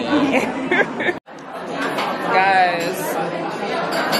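Chatter of many diners talking in a busy restaurant, briefly cut off about a second in.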